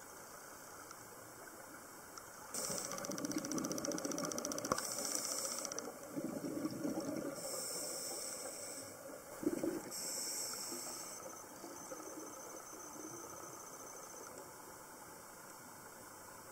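Scuba diver breathing through a regulator underwater: hissing inhalations alternate with bubbly, rumbling exhalations over about three breaths, starting a couple of seconds in and fading after about eleven seconds.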